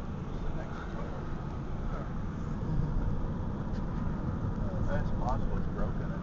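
Steady low road and engine rumble from a Ford Freestyle, heard from inside its cabin as it drives along a city street.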